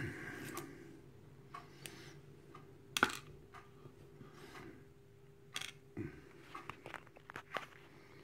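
Small metal lock parts being handled: a sharp click about three seconds in, then a few lighter clicks and taps as the brass euro cylinder and its plug are worked over a pinning tray, with a faint steady hum underneath.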